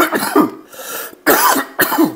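A man with a cold coughing: one cough at the start, then two more in quick succession just over a second in.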